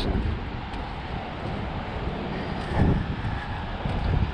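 Wind buffeting the microphone as a steady low rumble, louder for a moment near the end.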